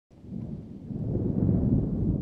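A low, noisy rumble that swells over about a second and a half, then begins to die away near the end.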